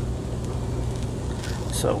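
Steady low roar and hiss of a Blackstone propane griddle's burners running under a full flat-top of cooking food.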